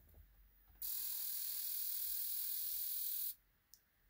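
A fuel injector on a GM 8.1 Vortec V8, held open by a Tech 2 scan tool's injector balance pulse. It makes a steady high-pitched hissing buzz that starts about a second in and cuts off sharply some two and a half seconds later, while fuel rail pressure bleeds down.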